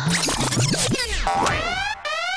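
Comic trailer sound effects: a quick flurry of springy boing glides sliding up and down, then falling sweeps, and about three-quarters of the way in a rising electronic siren whoop begins, repeating about twice a second.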